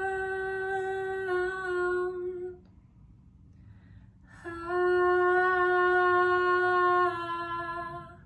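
A woman singing unaccompanied, holding two long wordless notes at a steady pitch, with a pause of about two seconds between them.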